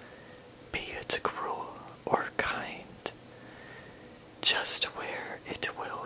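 Close-miked whispering of a poem read aloud, with small sharp clicks between the words and a short pause in the middle.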